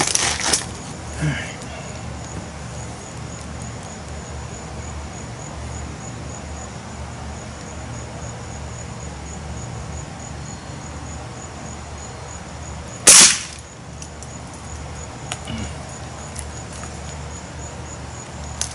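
A Daisy 1101 .177 spring-piston air rifle fires once: a single sharp shot about two-thirds of the way through.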